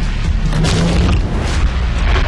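Action-movie trailer soundtrack: loud, dense music with deep booms and sharp hits throughout.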